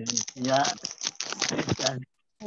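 Indistinct speech over a video-call connection, broken up by crackling and rustling noise.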